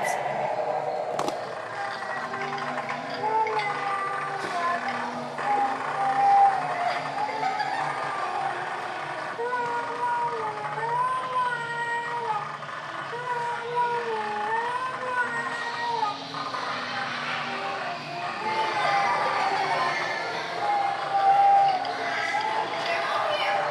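Spooky sound effects from Halloween animatronic props: an eerie tone that warbles slowly up and down over low steady drones, with voices mixed in.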